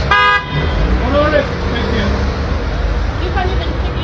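A short vehicle horn toot, lasting about half a second at the very start, over street traffic rumble.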